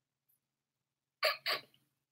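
Two short, quick vocal catches from a woman, like a brief breathy chuckle, a little over a second in, with dead silence before and after.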